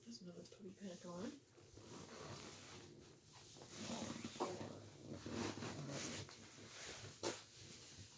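A puppy giving a few faint, short whimpers in the first second or so, followed by faint low voices.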